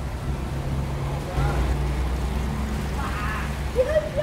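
Muffled underwater sound of a swimming pool: a steady low rumble and hum.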